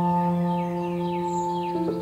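Calm ambient background music of long, ringing chord tones, which change to a new chord near the end, with bird chirps running over them.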